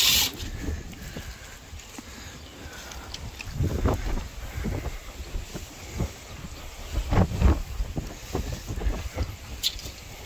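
Wind buffeting the microphone in gusts, a steady low rumble with louder swells about four and seven seconds in, and a sharp click near the end.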